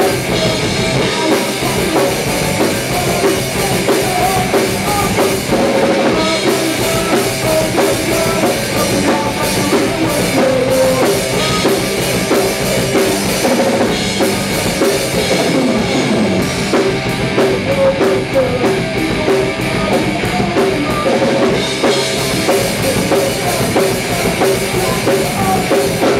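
Live rock band playing a song, with electric guitars over a drum kit, loud and unbroken.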